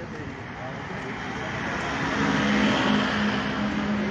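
A motor vehicle passing on the road: its noise swells to a peak about two and a half seconds in, then eases, with a low steady hum from about halfway.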